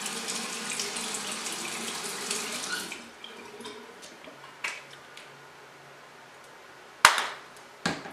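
Water running from a bathroom tap and splashing as a face is wetted at the sink, for about three seconds before it fades. A sharp click near the end.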